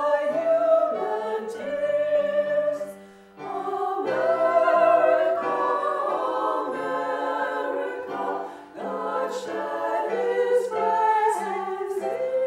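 A small group of women singing together in harmony, with long held notes and two short breaks between phrases.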